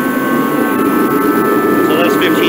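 Craftsman torpedo-style kerosene heater running: the fan and burner make a loud, even rush with a few steady high hums over it.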